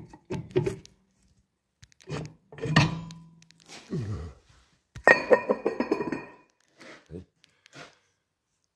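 Metal clinks and clanks from a car's rear drum brake parts and tools being handled, several separate knocks with a short metallic ring, the loudest about five seconds in.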